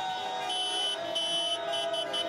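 Street celebration noise from football fans: a held, horn-like note, with shrill high tones switching on and off above it from about half a second in.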